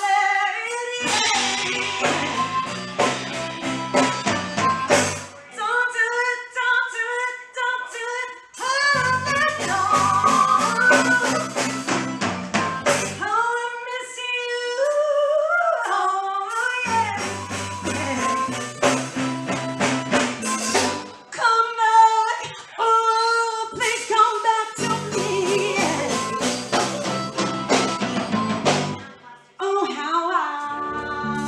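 A live band playing: a woman sings lead over keyboard, bass guitar and drums. The bass and drums drop out several times for a few seconds at a time, leaving the voice over sparser accompaniment, then come back in.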